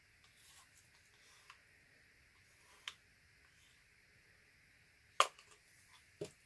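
Quiet handling of a thin stirring stick in small plastic cups of acrylic pouring paint: a few faint ticks and scrapes, then one sharp click a little after five seconds in.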